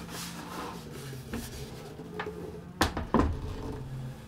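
Wooden tweed amp cabinet of a 1957 Fender Deluxe being turned around and set down on a wooden chair, with handling rustle and two sharp knocks about three seconds in as the cabinet bumps the seat. A faint steady low hum runs underneath.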